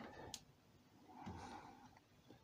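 Near silence: quiet workshop room tone with one faint click about a third of a second in and a soft faint rustle around the middle.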